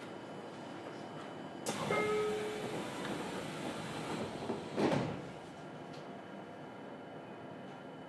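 Passenger doors of a JR Kyushu 303 series electric train closing. A sudden rush of noise comes as they start to slide, a short tone sounds, and they shut with a thud about five seconds in.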